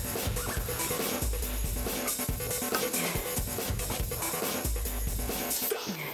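Background workout music with a steady beat and bass.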